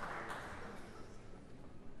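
Audience applause dying away over about the first second, leaving the hush of a large hall with a few faint clicks.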